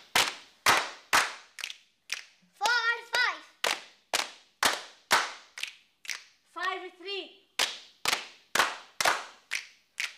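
Several people clapping their hands together in a steady rhythm, about two claps a second, keeping time for a number-calling clapping game. Twice a voice briefly calls out over the beat.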